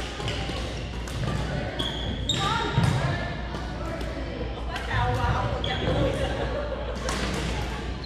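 Busy sports-hall ambience with echo: indistinct voices of players talking across the hall, mixed with scattered thuds and sharp knocks from badminton play and footwork.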